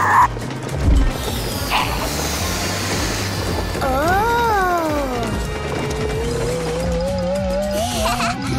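Cartoon background music with sound effects: a whistle-like tone glides up and then down about four seconds in, and a wavering tone begins to climb slowly near the end.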